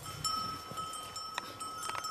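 A metal livestock bell ringing steadily, with two sharp knocks, one past the middle and one near the end.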